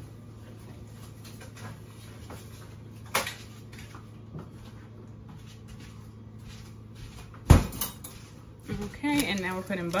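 Kitchen sounds over a steady low hum: a sharp click about three seconds in, then one loud thump about seven and a half seconds in, typical of a refrigerator door being shut. A woman starts speaking near the end.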